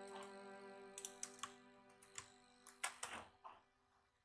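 Faint background music holding sustained tones, with a handful of sharp computer keyboard clicks from about a second in to about three seconds in.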